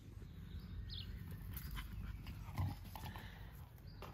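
Nine-week-old Bolonka puppies play-fighting, making small vocal sounds and a brief high squeak; the loudest is a short low sound about two and a half seconds in.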